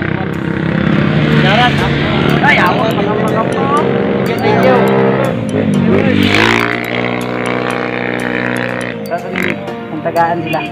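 People talking, mixed with background music that has a steady beat.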